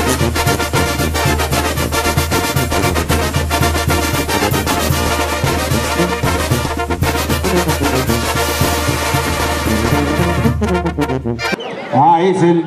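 Banda-style brass band music with tuba, playing steadily with a strong bass line and breaking off just before the end.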